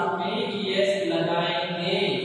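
Speech in a drawn-out, sing-song delivery: a voice talks on without a break, its pitch gliding slowly.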